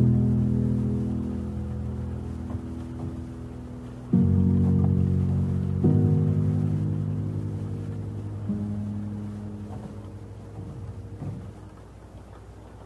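Background music of low sustained chords. New chords come in sharply about four and six seconds in, and each one fades slowly.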